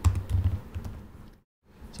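Computer keyboard keystrokes: a short run of key taps that stops a little over a second in.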